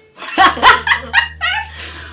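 A woman laughing: a string of about six short, loud bursts, each falling in pitch, starting a little way in.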